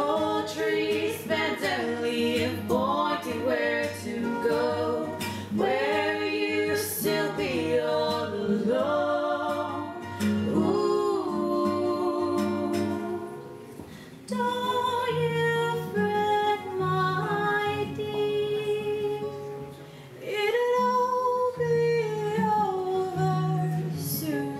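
Two women singing a song together to acoustic guitar accompaniment.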